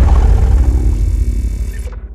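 A loud, low rumbling noise that dies away near the end.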